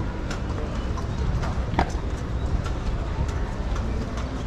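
A carriage horse's shod hooves clopping on stone paving in a few irregular steps, the sharpest about two seconds in, over a steady low rumble of outdoor background noise.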